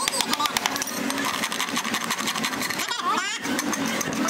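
Small farrier's hammer tapping horseshoe nails into a horse's hoof, a quick, even run of light sharp taps about seven a second, with a short break about three seconds in.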